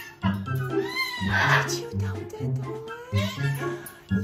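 Background music with a steady bass line. Over it, about a second in, a macaw gives one rising-and-falling call that breaks into a harsh squawk. Its owner takes the bird for a military macaw.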